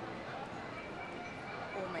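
Background chatter of diners in a busy restaurant, many voices blending together, with a woman starting to speak near the end.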